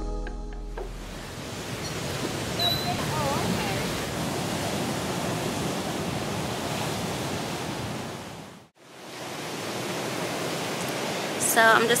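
Steady wash of ocean surf breaking against the shore, with a brief cut in the middle of it. The tail of a music track ends in the first second.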